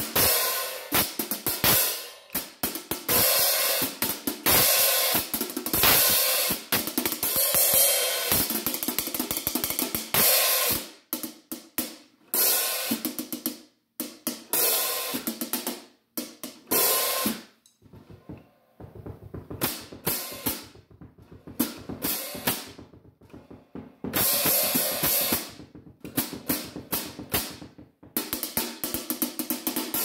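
13-inch vintage Zanchi F&F Vibra paper-thin hi-hat cymbals played with a drumstick in a quick run of strokes. The first ten seconds are loud and washy, the middle is sparser and quieter, and it picks up loud again near the end.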